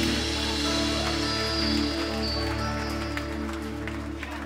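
A live band's closing chord held and slowly dying away, with several tones ringing together. Scattered audience clapping starts near the end.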